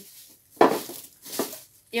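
Three short rustles and knocks of a plastic storage container in its plastic bag being handled, the first about half a second in and the loudest.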